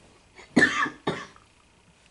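A person coughing twice in quick succession, about half a second in, in a small room.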